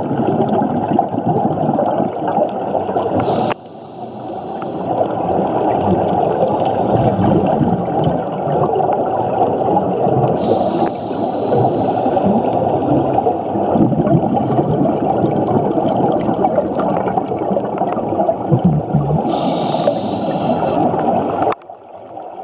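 Muffled underwater sound picked up by a camera in its housing: a continuous low rushing and gurgling of water, with scuba divers' exhaust bubbles. It breaks off abruptly about three and a half seconds in and again near the end, then builds back.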